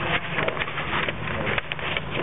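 Audience noise in a meeting room: a steady run of quick, irregular clicks and knocks with faint voices underneath.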